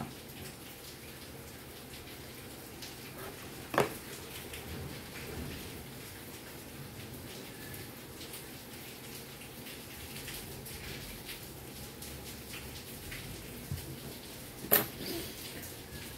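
Heavy rain falling steadily, a soft even hiss. Two brief knocks, at about four seconds and fifteen seconds, stand out over it.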